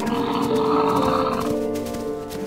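A bison's rough, low bellow lasting about a second and a half, over background music with long held notes.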